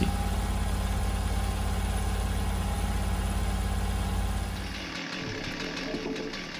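Portable hydraulic sawmill's engine running steadily at idle, fading out about five seconds in.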